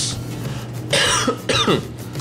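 A man coughs once, about a second in, followed by a short voiced throat-clearing sound.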